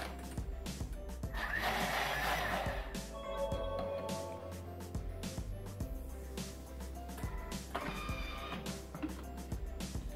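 Background music, with a burst of the Bimby (Thermomix) food processor blending coconut flour and water at high speed (speed 10) for about a second and a half near the start.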